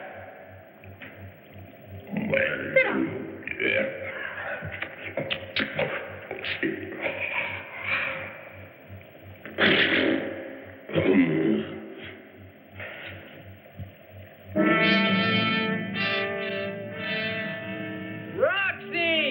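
Guttural grunts and growls from a man voicing a caveman, in irregular spurts over several seconds. About three-quarters of the way through, a film music cue of sustained notes comes in.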